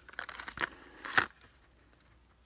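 Plastic packaging crinkling as it is handled, with two sharp crackles in the first second or so, then quiet.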